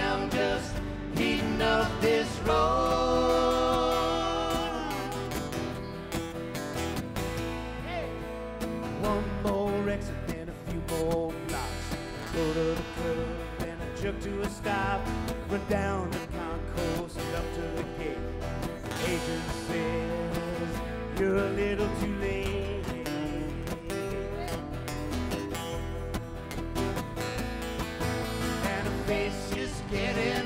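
A country band playing live, with guitar and bass, and a man singing at the microphone.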